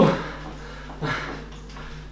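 A man's voice: a word trails off at the start, then one short, low vocal sound, a breath or grunt, comes about a second in, over a steady low hum.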